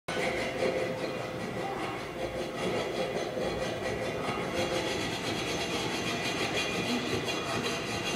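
Film soundtrack played back from a screen and picked up in the room: rhythmic metallic rasping of a hacksaw worked back and forth against a steel chain.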